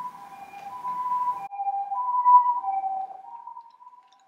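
Japanese ambulance two-tone 'pee-poh' siren: a high note and a low note alternating, each held about half a second. It grows louder toward the middle and fades near the end.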